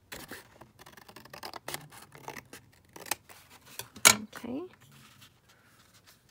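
Scissors cutting through a sheet of paper, a run of short snips with paper rustling. A loud sharp click comes about four seconds in.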